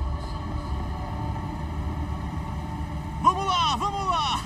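Steady low rumble of an idling boat engine with a faint steady hum over it. A man's voice begins near the end.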